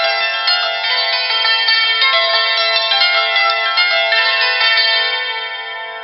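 Hammered dulcimer played with two hammers, struck on their leather-faced sides: quick runs of struck notes with the strings ringing on under each other. The playing eases off and the ringing dies away over the last second.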